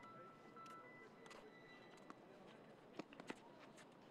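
Faint tennis court sound: two sharp pops of a tennis ball being struck about three seconds in, a third of a second apart, over quiet outdoor ambience. A faint high steady tone stops under a second in.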